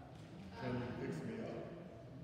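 A man speaking in a large church sanctuary; the words are not made out.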